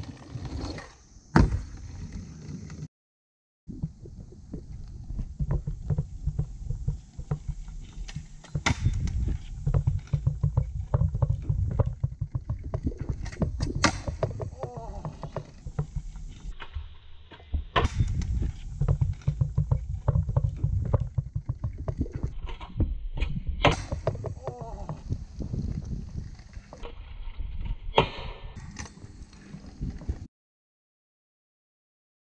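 Stunt scooter wheels rolling over rough asphalt with a continuous low rumble and rattle, broken several times by sharp clacks as the scooter lands tricks on the road.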